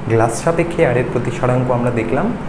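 A man speaking in Bengali, with a steady run of words.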